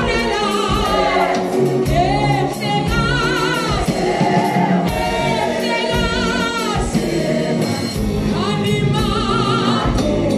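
Mixed gospel choir singing in full voice, with long held notes that waver in vibrato, over a steady beat.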